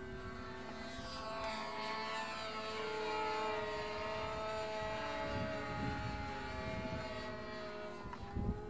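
Radio-controlled model aircraft's engine and propeller running in flight, a steady note whose pitch rises slightly in the first few seconds and then eases back down.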